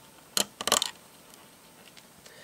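Small LEGO plastic plates being pressed onto the studs of a model: one sharp click, then a quick cluster of clicks.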